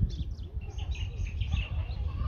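Small birds chirping, a quick run of short high calls through most of the two seconds, over a low rumble.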